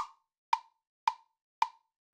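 GarageBand metronome count-in: four short, even clicks about half a second apart at 110 beats per minute, the first one accented and louder.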